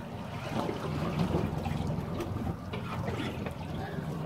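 Water lapping and trickling against the hull of a small boat, steady and moderate.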